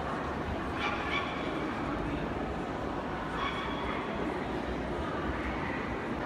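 Steady murmur of a crowd in a large hall over a low rumble, with a dog's short barks about a second in and a higher yelp a little after halfway.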